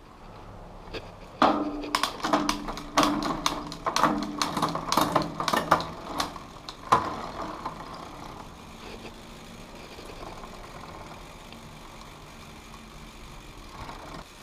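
Mountain-bike drivetrain turned by hand: the chain runs over a freshly fitted direct-mount chainring and the rear cassette while the chainline is checked, with a quick run of irregular clicks and ticks for the first half. It then goes on more quietly as a steady faint running.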